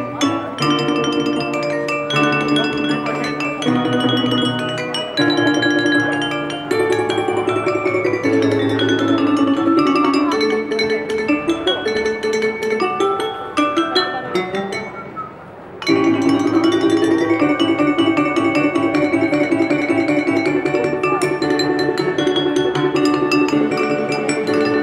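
Glass harp of water-filled wine glasses played by rubbing the rims, giving sustained ringing chords and quick sweeping runs up and down the glasses, with deep bass notes underneath. The music drops quieter a little after halfway and comes back full about two seconds later.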